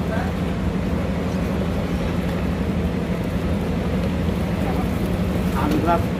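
A coach bus's diesel engine idling steadily with an even low rumble. Voices talk faintly near the end.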